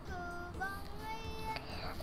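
A faint singing voice, a few quiet held notes that change pitch, under the louder pauses of a child reading aloud.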